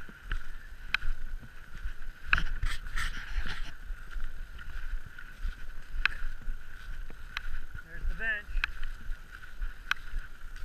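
Skate skis and poles working on groomed snow in a steady stride: sharp pole-plant clicks about every second or so over a constant gliding hiss, with a low rumble on the microphone. A short wavering squeak comes near the end.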